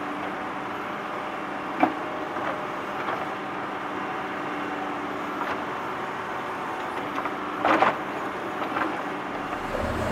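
Digging tractor's engine running steadily, with short sharp clanks of metal on metal: a single one about two seconds in and a short cluster near the eight-second mark. A deeper rumble comes in near the end.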